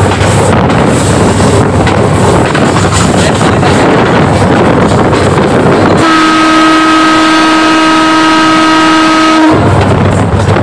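Loud rushing noise of a train running at speed, then a locomotive horn sounds one long steady blast of about three and a half seconds, beginning about six seconds in and cutting off sharply.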